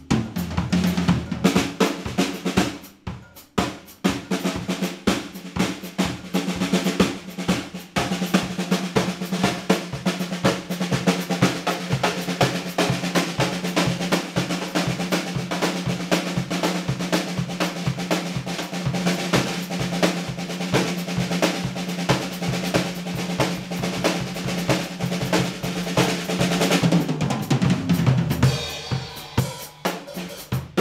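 Premier XPK drum kit played with sticks: a fast, busy run of snare, bass drum, tom and cymbal strokes, with a short break about three seconds in. A steady low tone sounds under most of the playing.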